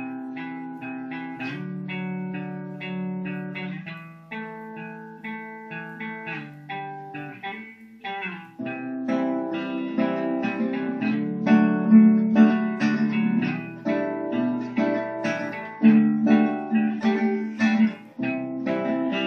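Guitar playing the instrumental intro to a song, picked chords changing every second or two and getting louder about halfway through.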